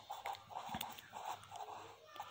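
Marker pen writing on paper: a run of short, faint strokes, about three a second, as words are written out by hand.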